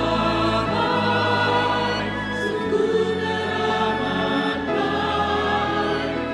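A church congregation choir singing a hymn in sustained chords, the harmony moving to a new chord about every two seconds.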